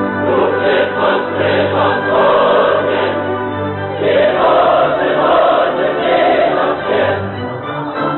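Mixed opera chorus of men and women singing in Russian with the orchestra, a loud and lively passage of choral praise.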